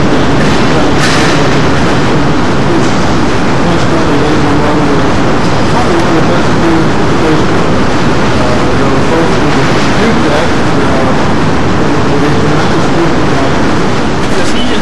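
Loud, steady background noise with faint voices talking underneath it.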